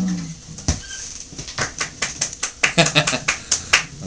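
The last strummed chord of an Ovation-style acoustic guitar dies away in the first half second. Then comes a quick, uneven run of short, breathy bursts and sharp clicks: a man laughing, with handling noise.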